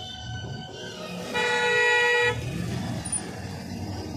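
A vehicle horn honking once, a single steady note lasting about a second, starting about a second and a half in, over the low rumble of a car driving on the road.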